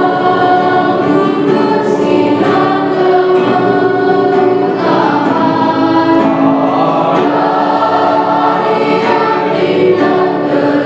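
Mixed choir of girls' and boys' voices singing together in parts, holding long chords that move from note to note.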